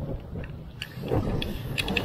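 Low wash of small waves breaking on a sandy beach with wind on the microphone, a few faint clicks in the middle, and a small splash near the end as a released flounder lands in the shallow water.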